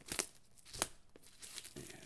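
Cellophane shrink-wrap being peeled off a hardcover book, crinkling with a few sharp crackles, the loudest near the start and just under a second in.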